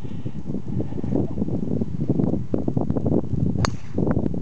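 Wind buffeting the microphone, then a single sharp click of a driver striking a teed golf ball near the end.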